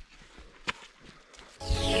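Quiet outdoor background with a single faint tap, then upbeat electronic background music cuts in suddenly near the end, opening with a falling swoosh.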